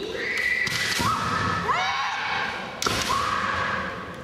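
Women kendo fighters shouting kiai at each other: a run of long, high-pitched drawn-out cries from two voices, overlapping and rising at their starts. A single sharp knock comes near the end.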